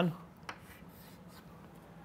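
Chalk on a chalkboard: a light tap about half a second in, then faint scratchy strokes as a rectangle is drawn.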